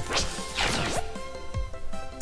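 Gigantoonz online slot game sound effects: a short whoosh, then a longer swoop falling in pitch within the first second, as cascading symbols drop into the grid. The game's background music plays steadily underneath.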